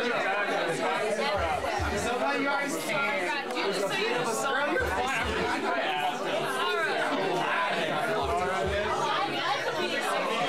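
Many people talking at once, indistinct party chatter and laughter in a room, with short low thuds now and then.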